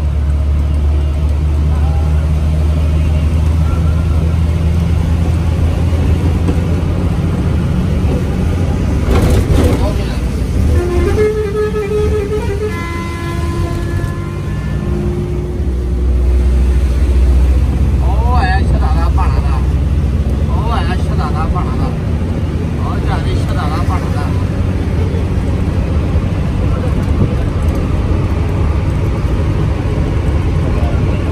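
Bus engine running steadily with a continuous low drone and road noise. About eleven seconds in, a multi-note vehicle horn sounds for a few seconds, its tones stepping from one pitch to another.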